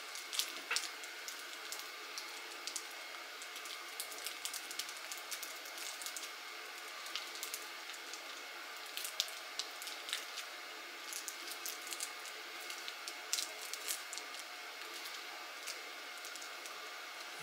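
Tape and wrapping being peeled by hand off the swollen LiFePO4 pouch cells, which are coated in slimy goo: irregular small sticky crackles and squelches, over a faint steady hum.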